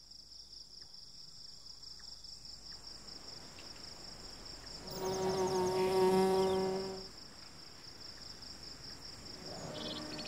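Crickets chirring steadily as night-time ambience on a cartoon sound track. About halfway through, a louder pitched tone swells and fades for about two seconds.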